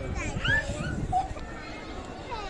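Chatter of people walking, with a child's short, high-pitched calls that rise and fall in the first half second or so.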